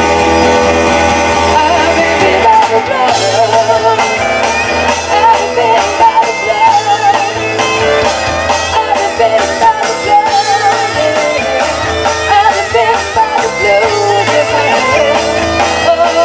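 Live blues-rock band playing an instrumental passage: electric guitar, bass guitar, Kurzweil stage piano and drum kit. The drums come in about three seconds in, and a wavering lead line runs over the held chords.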